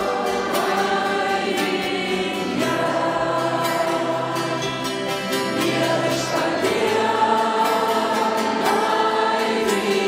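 A large congregation singing a worship song together, many voices held on long sung notes, with musical accompaniment.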